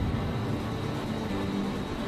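Briquette press machinery running steadily, a continuous mechanical hum with a low drone.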